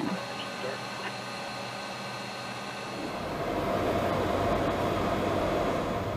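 Steady cockpit noise of a C-5 Galaxy in flight: engine and airflow noise with faint steady whines from the flight-deck equipment. It grows louder and deeper about three seconds in.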